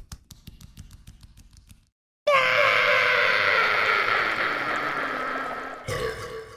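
A comic cartoon cry from a person's voice, one long call that slowly falls in pitch, starting about two seconds in after some faint quick ticking.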